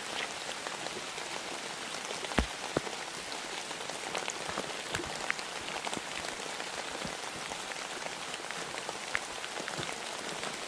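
Steady rain falling, a constant hiss with a scattered patter of individual drops. Two louder sharp taps come about two and a half seconds in.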